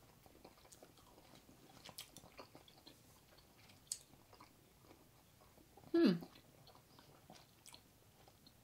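Faint chewing of freshly unwrapped stick gum, with soft, scattered clicks from the mouth.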